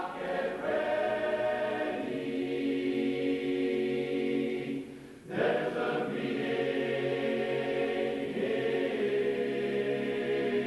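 Men's barbershop chorus singing a cappella in close harmony, holding sustained chords that change every second or two. Just before five seconds in the sound briefly dips, then a loud new phrase begins.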